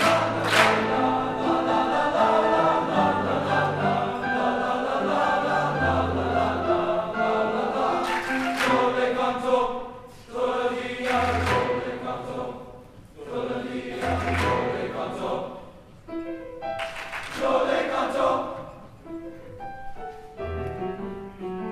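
Men's choir singing, a full group of male voices in harmony. In the second half the singing comes in shorter phrases, broken by brief pauses.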